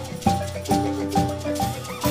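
An ensemble of marimbas playing together: wooden bars struck with mallets in a quick run of notes, with low bass notes ringing under higher ones.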